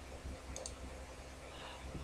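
Two faint computer mouse clicks about half a second in, over a low steady hum.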